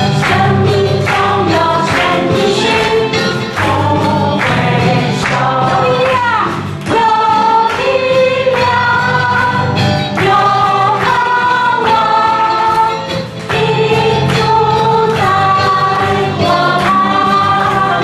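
Church praise band performing a worship song: a group of voices singing together over a band with a steady bass and a regular beat.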